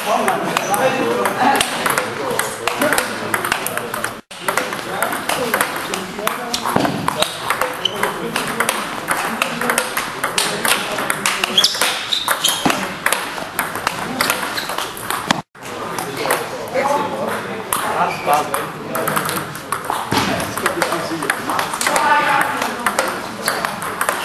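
Table tennis rally against a topspin return board: a fast, continuous run of ball clicks off the rubber bat, the table and the board. Voices carry in the background, and the sound cuts out sharply twice.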